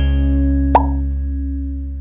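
Intro jingle's final low chord held and slowly fading out. A single short pop sound effect comes just under a second in.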